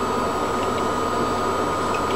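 Steady background hiss with a low hum and a thin high steady whine, unchanging throughout, with no distinct event.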